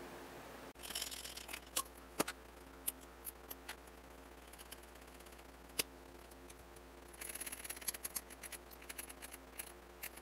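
Faint metallic clicks and light scraping as a lever-action grease gun is handled, over a steady low hum. There are a handful of separate clicks through the first six seconds, with one sharp click about six seconds in, then a short spell of scraping about seven to eight seconds in.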